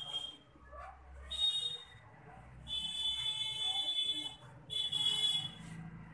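An electronic buzzer beeping: a high, steady tone sounding four times, the bursts uneven in length and the third the longest, at a bit over a second.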